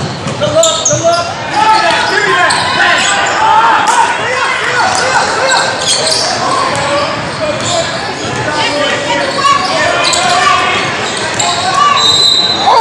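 Basketball bouncing on a hardwood gym floor during play, with a steady hubbub of many overlapping voices from spectators and players, ringing in a large hall.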